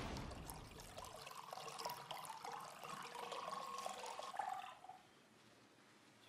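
Wine pouring from a bottle into a glass, faint liquid trickling and gurgling that dies away about five seconds in.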